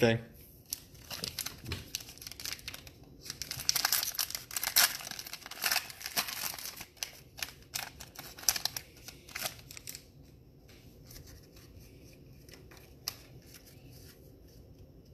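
Foil wrapper of a Prizm football card pack crinkling and tearing as it is ripped open by hand. The crackling is dense and loudest in the middle, then thins to a few faint ticks for the last few seconds as the cards are handled.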